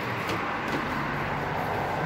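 A steady low mechanical hum with a faint hiss, even throughout, with no distinct knocks or clatter.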